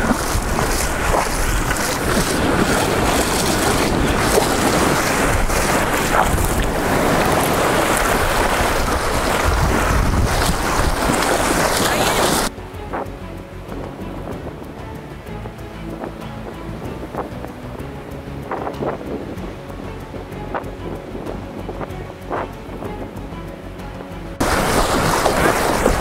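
Wind buffeting the microphone over the wash of small surf waves in shallow water. About halfway through the sound cuts suddenly to a much quieter stretch with faint background music, and the wind and surf come back near the end.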